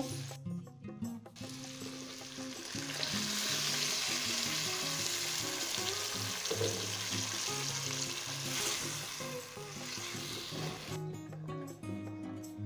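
Blended tomato-and-chile salsa poured into hot oil over fried potatoes and onion in a clay cazuela, sizzling. The sizzle builds about a second and a half in, is strongest a few seconds later, and eases off near the end. Soft background music with a low melody plays underneath.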